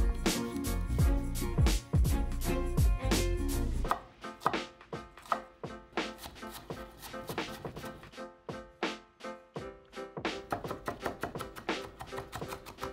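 Chef's knife cutting a shallot on a wooden cutting board: a run of sharp knife strikes against the board that come quicker near the end as it is diced fine. Background music plays under it, louder in the first few seconds.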